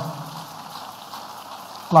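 A large congregation clapping continuously, a steady, fairly quiet patter of many hands with no beat.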